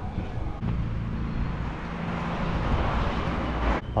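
A motor vehicle's engine hum and road noise on the street, growing louder as it passes, then cut off suddenly near the end.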